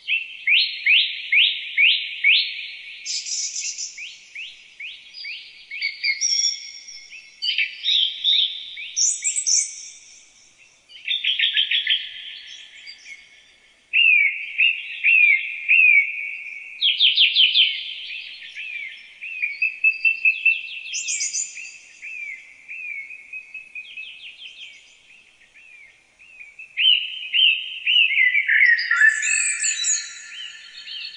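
Songbirds singing, one phrase after another and sometimes overlapping: quick runs of repeated chirps, trills and short downward-sweeping notes, with brief pauses between phrases.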